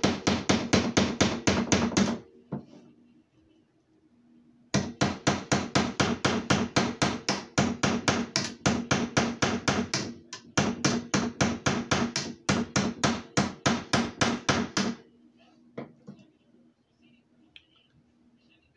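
Rapid tapping of metal on metal: a broken pair of vise grips used as a hammer, driving a nail into a frog-gig handle at about six blows a second, each blow with a short ringing note. A short run of blows, a pause of a couple of seconds, then a long steady run with two brief breaks, which stops a few seconds before the end.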